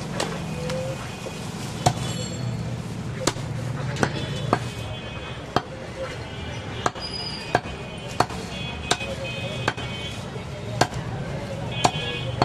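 Heavy butcher's cleaver chopping goat meat against a wooden log chopping block: about a dozen sharp chops at an uneven pace, roughly one a second.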